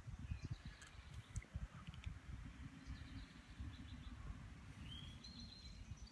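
Light wind buffeting the microphone in a low, uneven rumble, with faint, scattered bird chirps and a short whistled bird call about five seconds in.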